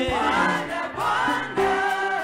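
A choir and congregation singing a gospel worship song together, the voices sliding between notes, with a low thump just after the start.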